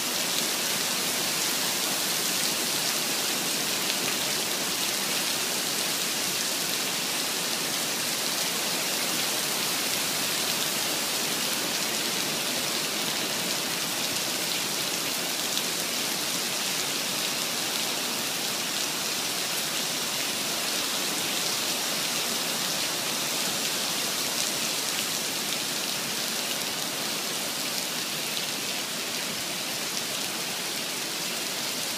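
Heavy rain pouring steadily onto a wet asphalt parking lot: a dense, even hiss with no let-up.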